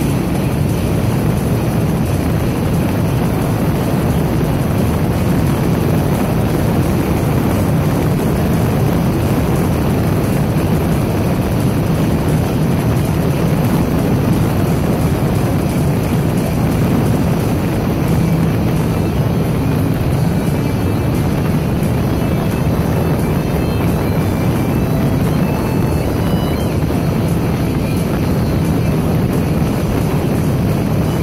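Steady, loud rumble of a moving vehicle on the road: engine, tyre and wind noise picked up by a dash-mounted phone.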